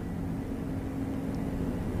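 Steady low room rumble in a pause between speech, with a faint held hum through most of it that stops near the end.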